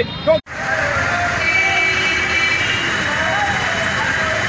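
A man's voice breaks off about half a second in at a cut; then steady street ambience: an even hiss of background noise with faint distant voices.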